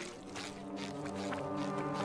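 Background score holding a low, steady horn-like chord of several sustained notes.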